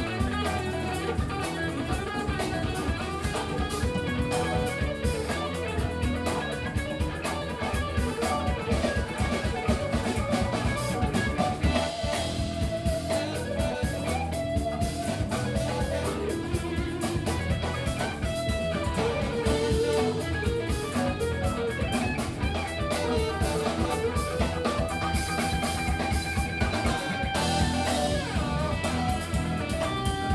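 Live funk band playing, with electric guitar and drum kit, and a saxophone playing over the band.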